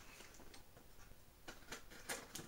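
Near silence: room tone with a few faint light ticks near the end, from a cardboard shipping box being handled.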